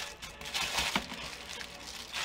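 Crinkling and rustling of a plastic sheet as it is lifted and folded over a slab of bubble-bar dough to start rolling it up, briefly louder around the middle.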